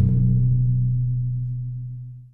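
The closing note of an outro logo sting: a low held synth tone that slides down in pitch at the very start, then fades steadily away.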